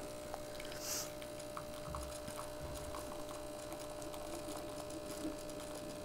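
Breville Barista Touch espresso machine's vibratory pump running during shot extraction, a faint steady hum, with a brief soft hiss about a second in.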